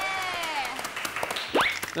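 A small group of people clapping their hands, over a drawn-out voice that trails off in the first moments. A short, quick rising sound cuts in near the end.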